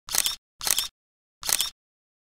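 Three short, sharp click-like sound effects, each about a third of a second long and spaced roughly half a second to a second apart, with dead digital silence between them.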